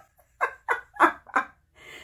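Four short, soft vocal sounds, about three a second, followed by a faint rustle near the end.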